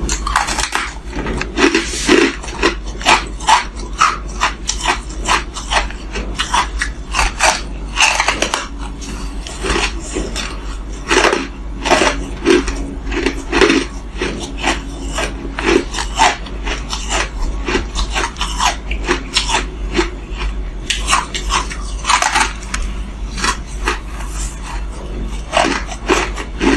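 Close-up crunching of frozen ice chunks being bitten and chewed: many sharp, irregular crunches, over a steady low hum.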